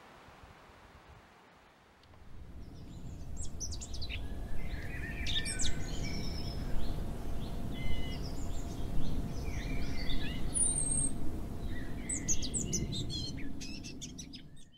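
Birdsong: many short chirps and calls from several birds over a steady low rumble. It starts abruptly about two seconds in, after near quiet.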